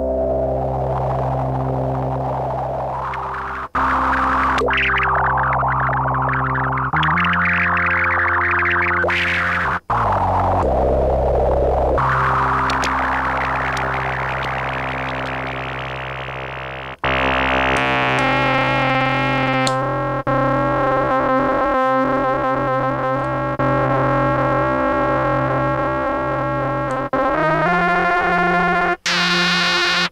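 Minimoog synthesizer playing sustained low notes, with noise modulating its low-pass filter so a hissy, rough sweep rises and falls over the notes. The notes change every few seconds, and about 17 seconds in the sound turns brighter and buzzier with the hiss gone.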